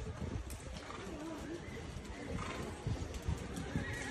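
A horse whinnies faintly about a second in, with distant voices in the background.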